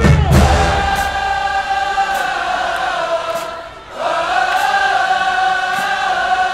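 Marching band: the drums and low brass fall away within the first second or so, leaving the band's voices singing long held notes in unison, with a short break about three and a half seconds in before the next held phrase.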